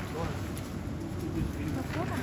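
Steady low hum of a supermarket's refrigerated display cases under general store noise, with a brief low murmured 'ừ' near the end.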